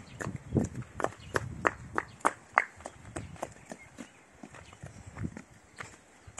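Footsteps on dry fallen leaves and bare dirt: a quick string of sharp crackling steps over the first three seconds, then fewer and fainter.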